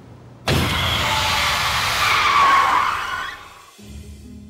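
A car braking hard, its tyres screeching and skidding on the road. The screech starts suddenly about half a second in, lasts nearly three seconds and fades out.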